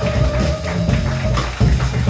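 Live small-group jazz: drum kit with cymbals, upright bass and electric keyboard playing together, with one long held note through the first part.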